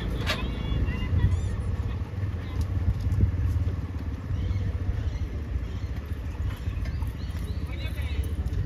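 Steady low rumble of vehicles, with faint voices in the background.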